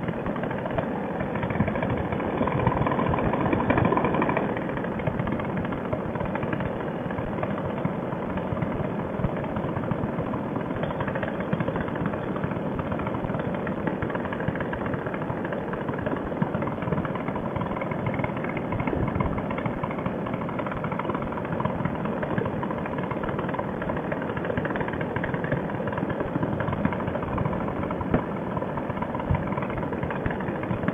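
Fresh Breeze Monster paramotor's two-stroke engine and propeller running steadily in flight, mixed with wind on the microphone, briefly a little louder a few seconds in.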